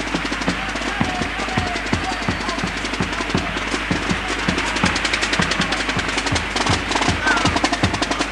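Murga percussion, a bass drum (bombo) and snare drum, beating a steady rhythm of about three to four strokes a second, over loud audience applause and cheering.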